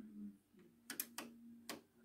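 Four faint, sharp clicks from a Whirlpool oven's rotary control knob being turned, in the second half, with no beep: the oven's key tone has just been switched off.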